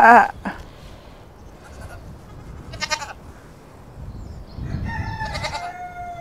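Goat bleating: a loud, quavering bleat right at the start, then fainter, shorter calls about three seconds in and near the end.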